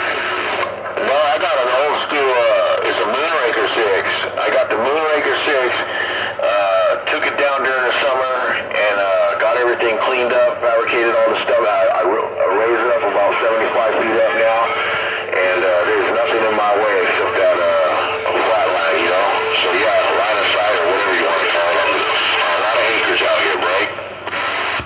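A long-distance CB station's voice coming in over a Galaxy CB radio's speaker: continuous talk through radio band noise, the signal strong enough to swing the receive meter well up the scale.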